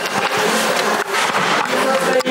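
Steady rushing background noise of a busy room, with indistinct voices talking.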